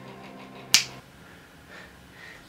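A single sharp snap about three quarters of a second in, over a low steady hum that stops about a second in.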